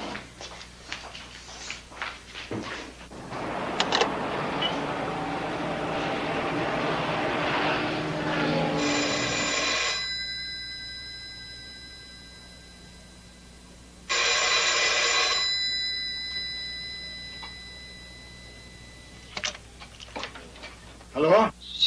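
An old dial telephone's bell rings twice, each ring lasting about a second and a half with the tone lingering after it. Before the first ring a steady rushing noise builds and cuts off as that ring ends.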